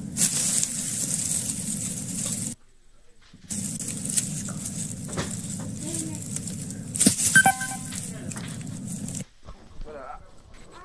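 Outdoor phone-video audio playing back: a steady rumble of wind noise on the phone's microphone with handling knocks, cutting out for about a second near three seconds in and stopping about a second before the end. A short, pitched voice sound comes about seven seconds in.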